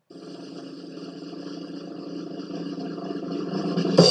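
Drum roll swelling steadily louder for about four seconds and ending in a cymbal crash right at the end, a drum-roll sound effect.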